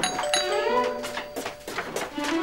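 Doorbell chime ringing: bright bell-like notes struck twice in quick succession, then a ringing tone that fades over about a second and a half.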